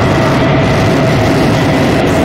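Dark ambient / powernoise track: a loud, unchanging wall of droning noise over a low rumble, with two steady held tones above it.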